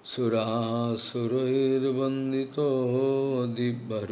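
A man chanting a devotional mantra solo in slow, long-held notes: three drawn-out phrases on a fairly steady pitch, each ending in a short break.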